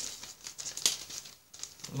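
Plastic packet holding a sheet of temporary tattoos crinkling and rustling as it is handled and closed, with a sharper tick a little under a second in.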